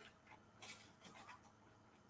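Near silence: room tone with a few faint, soft ticks about halfway through.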